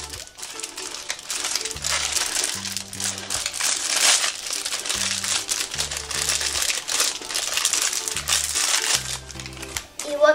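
A small toy wrapper packet crinkling and rustling in the hands as it is torn open, with dense, irregular crackles, over background music with a steady bass line.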